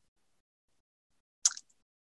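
Near silence from gated call audio, broken once about one and a half seconds in by a single short, sharp click.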